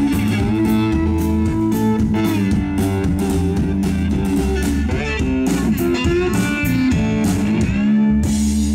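Electric blues played live by a trio, without vocals: a lap-style slide guitar plays gliding notes over electric bass and a drum kit keeping a steady beat.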